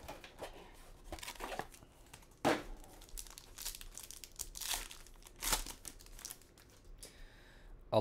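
Plastic wrapper of a trading-card pack crinkling and tearing as it is peeled open by hand, in a series of short crackles and rips with brief pauses between them.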